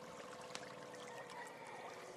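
Faint water at the shoreline, small lapping and trickling sounds with scattered light splashes, over a faint steady hum.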